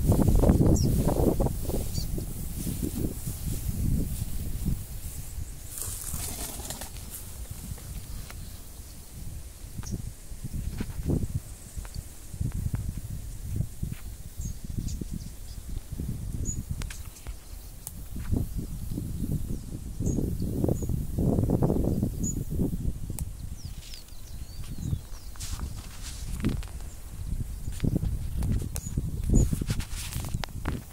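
Wind buffeting the microphone in irregular gusts, a low uneven rumbling, with a few faint high bird chirps.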